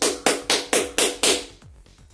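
One person clapping hands about six times in quick, even succession, roughly four claps a second, stopping after about a second and a half.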